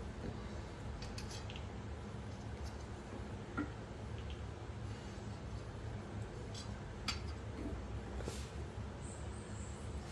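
Quiet handling sounds of hands folding and pressing a filled dough round on a steel plate, with a few faint light clicks against the metal, over a steady low hum.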